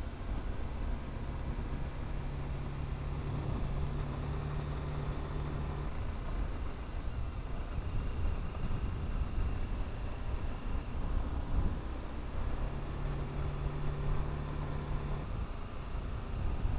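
BMW G 310 GS single-cylinder engine running at a steady cruising pitch on a gravel road, mixed with wind and tyre rumble. The engine note stands out clearly twice, for a few seconds each time.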